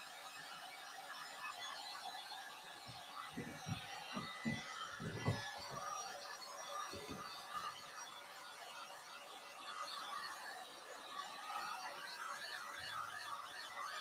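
Faint, steady whir of a handheld heat gun drying a fresh coat of paint on wood, with a few soft knocks in the middle.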